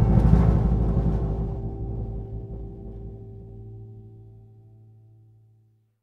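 A rock band's final chord ringing out at the end of a song: a cymbal wash dies away within about two seconds, and the sustained guitar and bass notes fade steadily to silence just before the end.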